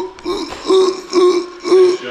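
A man's voice right at the microphone, making short repeated vocal noises about twice a second, each on much the same pitch, with no words.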